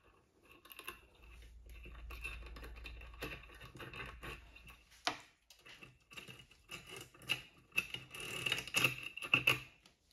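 Irregular clicking, tapping and scraping of small hard objects being handled, with one sharp click about halfway; the clatter gets busier and louder near the end.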